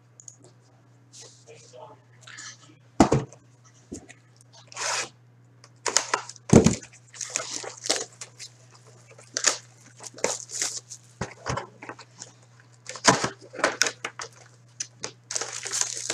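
Plastic shrink wrap being ripped and crinkled off a sealed hockey-card hobby box in a string of short separate rustles and tears, then the cardboard box lid being opened. A low steady hum runs underneath.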